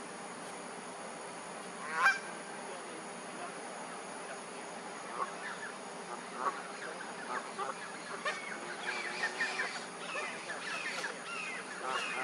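Birds calling: one loud, sudden call about two seconds in, then many short overlapping calls from about five seconds on, growing busier toward the end.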